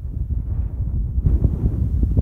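Wind buffeting the microphone outdoors: a loud, uneven low rumble that rises and falls in gusts.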